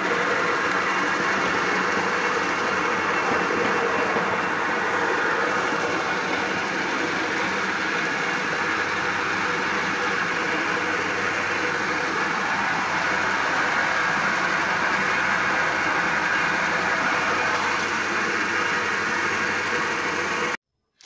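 Motor-driven fruit juice extractor running steadily while watermelon pieces are fed in and crushed, with a loud, even mechanical noise.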